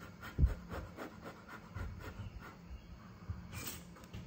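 Short breaths blowing on a spatula of hot, steaming cauliflower cheese sauce to cool it, with a soft thump about half a second in.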